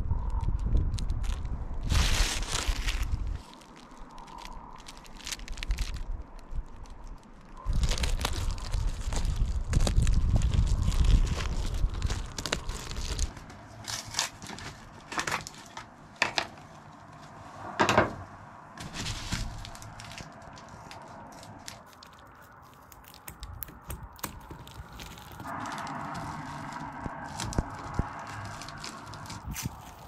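Reflective bubble-foil insulation rustling and crinkling as it is unrolled, handled and cut, with scattered sharp clicks and scrapes. A steady sound with several pitches comes in near the end.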